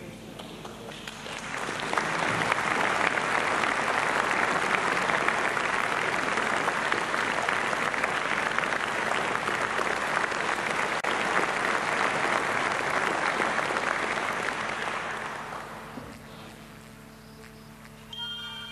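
Audience applause in a concert hall, swelling in over the first couple of seconds, holding steady, and dying away near the end.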